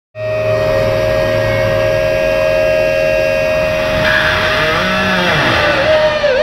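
Distorted electric guitar holding a long, steady feedback note through the amplifier stack. About four seconds in, the pitch starts to bend in curving glides and wavers.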